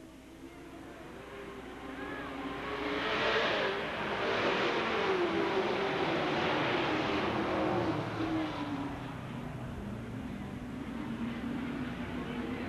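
A pack of full-fendered Sportsman dirt-track stock cars racing past. Their engines grow louder over the first few seconds, are loudest through the middle, then ease off a little as one engine note slides lower.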